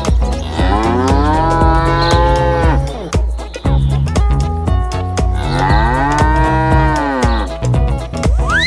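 A cow mooing twice, two long moos of about two seconds each that rise and then fall in pitch. Background music with a steady beat plays under them.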